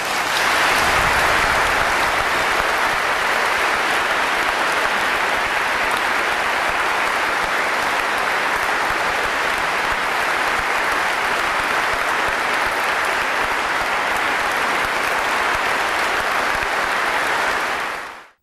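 A large congregation applauding steadily, beginning suddenly and cutting off abruptly at the end.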